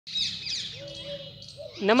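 Small birds chirping outdoors: rapid, high, downward-sweeping chirps, with a few faint lower notes in between. A man's voice cuts in near the end.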